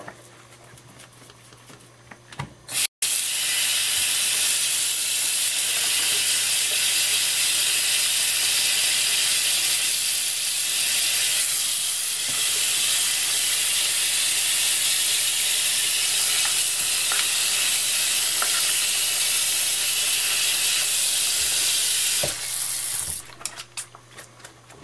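Tap water running into a sink in a steady, even hiss for about twenty seconds, rinsing the soap and loosened oil paint out of a paintbrush; the flow stops abruptly near the end. A quieter couple of seconds with faint clicks comes before the water starts.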